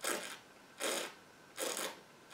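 A stemmed wine glass of red wine being swirled on a countertop, its foot scraping across the surface in three short strokes a bit under a second apart.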